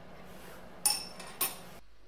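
Two sharp metallic clinks, each with a short ring, from a spanner on the steel drain plug of a drill press gearbox as the plug is closed after draining the oil.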